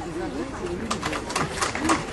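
Scattered hand clapping from a crowd, uneven and not very dense, with low voices underneath.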